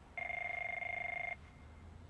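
Push-button desk telephone ringing: one trilling ring lasting just over a second, starting shortly in.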